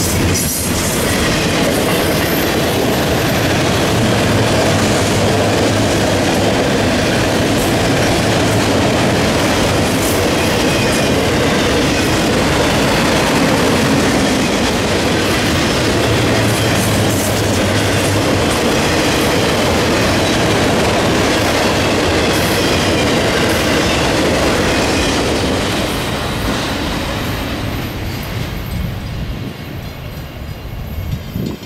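Florida East Coast Railway freight train passing at speed: the steady rolling noise and clicking of double-stack intermodal cars and then autorack cars going by. The sound fades over the last few seconds as the end of the train passes.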